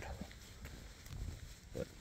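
A pause in a man's talk, filled only by a faint low rumble, with a short spoken word near the end.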